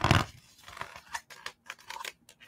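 A short laugh, then a run of crisp rustles and flicks as a paper page of a picture book is turned.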